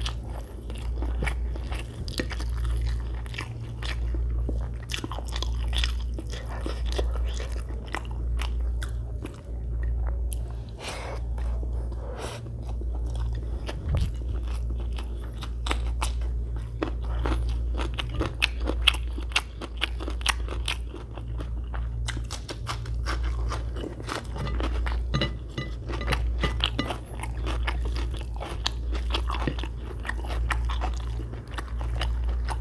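Close-miked chewing of mouthfuls of biryani rice eaten by hand, with wet mouth clicks and smacking that rise and fall about once a second, over a steady low rumble.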